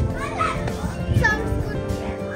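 A young girl's voice, high-pitched and brief, over background music.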